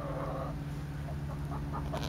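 A hen gives a soft, drawn-out call in the first half second, over a steady low hum.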